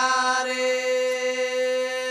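A single long note held at one steady pitch for about two and a half seconds in a Banjara bhajan, chant-like, ending abruptly as singing resumes.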